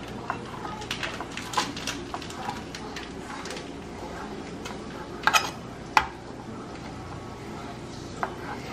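Small kitchen knife slicing chanterelle mushrooms on a plastic cutting board: irregular soft taps of the blade against the board, with two sharper knocks about five and six seconds in.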